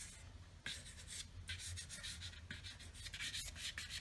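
Chalk pastel scratching across drawing paper in a run of short, irregular side-to-side strokes, laying in the water highlights.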